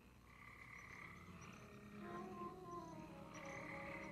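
Frogs croaking, in two spells, over soft, sustained orchestral film music.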